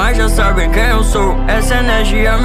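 Portuguese-language hip-hop track: rapped vocals over a deep, sustained bass line and backing beat.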